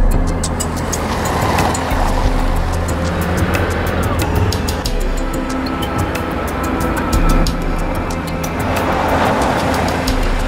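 A car driving fast across gravel, its tyres sliding and throwing up grit, with two swells of tyre noise about a second and a half in and near the end as it turns and pulls up. Dramatic score music with a steady ticking beat plays over it.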